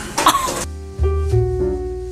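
A woman's brief cough-like vocal outburst in the first half-second, then background music with held keyboard notes over a changing bass line.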